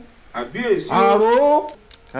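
A man's voice speaking, with a drawn-out phrase about a second in.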